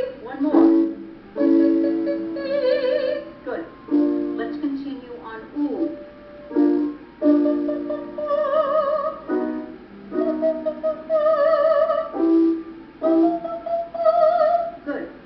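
A woman singing a vocal exercise of short staccato 'oo' onsets, each run ending in a held note with vibrato. The pattern repeats several times, moving up in pitch, over a keyboard accompaniment.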